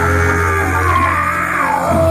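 Live soul band playing on stage between sung lines: electric bass and drums holding the groove under steady held notes.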